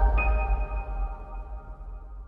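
Synthesized logo sting: a held electronic chord over a deep low boom, with a high ringing tone joining just after the start, all slowly fading away.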